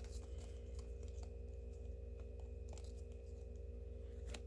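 Faint clicks and slides of glossy 2020 Select baseball cards being shuffled through by hand, a few separate ticks over a steady low hum.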